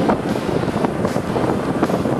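BMW 335i's turbocharged straight-six and road noise heard inside the cabin as the car is driven hard on a race track, with wind buffeting the microphone. It runs as a steady, loud rush with no distinct events.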